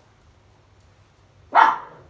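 A pet dog barks once, sharply and loudly, about one and a half seconds in.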